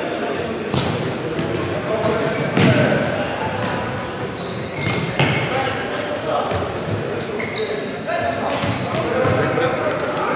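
Futsal play on a wooden sports-hall court: sneakers squeaking in short high chirps, the ball being kicked and bouncing with sharp knocks, and players calling out, all echoing in the large hall.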